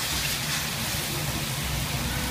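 Sauce and vegetables sizzling in a hot wok on a gas burner, a steady even hiss.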